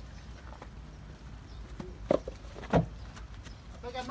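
Two sharp knocks, about two seconds in and again half a second later, at a fishing boat's wooden launching cradle; the second is louder, with a low thud. A low steady rumble runs underneath.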